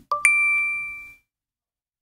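Electronic two-note chime: a low ding followed at once by a higher, louder one that rings out and fades over about a second.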